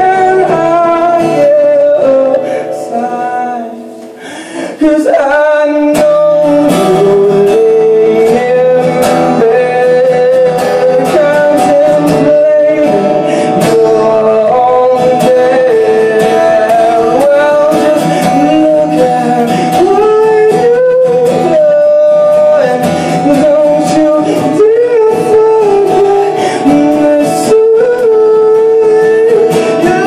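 A man singing live while strumming an acoustic guitar. The music thins out and drops in loudness about two seconds in, then comes back in full near five seconds and carries on steadily.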